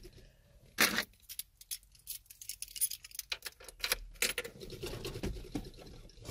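Scattered light clicks and rattles in a truck cab, with a louder knock just under a second in, like keys jangling and things being handled by the steering wheel.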